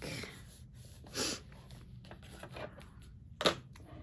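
Ink pad being rubbed along a trimmed paper edge, heard as brief soft swishes, with one sharp click about three and a half seconds in.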